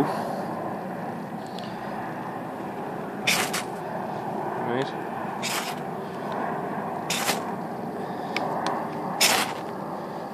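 Ferrocerium fire steel drawn hard along the spine of a fixed knife, four short rasping scrapes about two seconds apart, each throwing a shower of sparks onto tinder.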